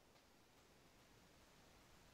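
Near silence: faint steady background hiss between utterances.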